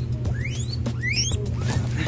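Guinea pigs squealing (wheeking) in short, rising calls, several of them in quick succession, as they are being caught.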